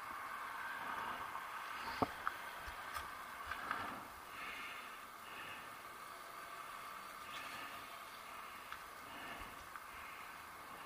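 Faint city street ambience: a low steady hum of traffic, with one sharp click about two seconds in.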